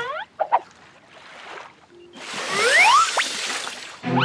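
Cartoon sound effect of the sea monster surfacing: a loud whoosh, like rushing water, starts about halfway through, with two whistle-like tones gliding upward inside it.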